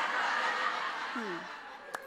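Sitcom studio audience laughing after a punchline, loud at first and dying down over the two seconds.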